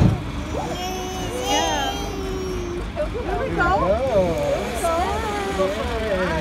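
A high-pitched voice vocalizing without clear words, with a low, steady engine rumble underneath. A short low thump comes right at the start.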